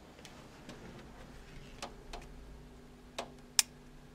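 A few sharp clicks, four in all, the loudest near the end, over a faint steady hum that comes in about halfway through.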